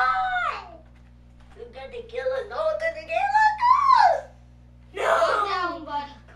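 A child's voice wailing without words: a long wavering moan that climbs and then drops off, with shorter vocal outbursts just before it and about five seconds in.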